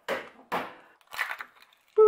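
Raw eggs cracked open against a hard edge: three sharp cracks of eggshell, about half a second apart at first.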